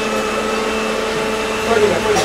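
A machine running: a steady hum with several held tones.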